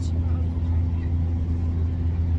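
Steady low drone of a passenger train's running noise heard from inside the carriage, even in level throughout.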